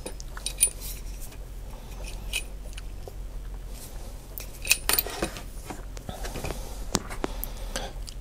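Small clicks and clinks from the DJI Osmo Z-axis adapter arm being handled and folded, its metal and plastic joints knocking, with a cluster of knocks about five seconds in.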